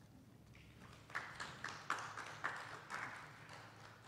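Light, scattered hand-clapping from a small audience, starting about a second in: a few irregular claps over a thin haze of applause.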